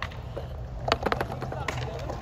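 Skateboard wheels rolling over concrete, a steady low rumble, with a few faint clicks.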